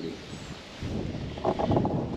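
Wind rumbling on the phone's microphone, with rustling of leafy brush. It gets louder a little under a second in.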